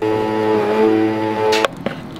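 Countertop blender running on a berry smoothie mix. It starts suddenly, its motor pitch sags briefly under the load, and it stops about a second and a half in.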